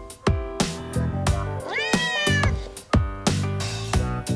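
A cat's single meow about two seconds in, rising in pitch and then held briefly, over background music with a steady drum beat.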